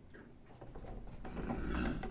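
A rope rasping and scraping as it is drawn tight around a bull's neck, a rapid run of scrapes that starts about half a second in and grows louder toward the end.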